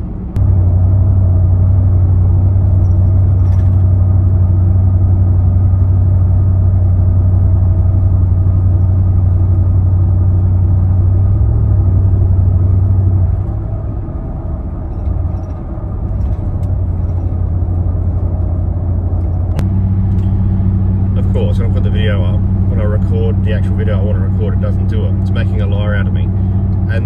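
Cabin drone of a Nissan Y62 Patrol's 5.6-litre V8 pulling on light throttle up a slight hill at about 90 km/h, heard from inside the cabin: a loud, steady low hum comes in abruptly about half a second in, eases off around 13 seconds, and returns with a second, higher hum about 20 seconds in. The revs hold steady with no surging, so the tacho fluctuation that shows the trans oil too cold and thick does not appear.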